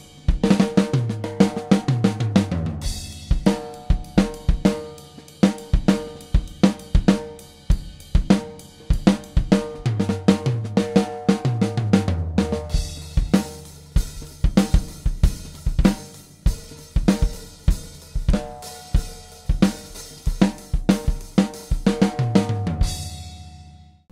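Pearl drum kit played in a steady groove of kick, snare, hi-hat and cymbals, with fills running down the toms from high to low about a second in, around ten seconds in and near the end. Close-miked with the Audix FP7 drum mic kit, straight and flat with no EQ.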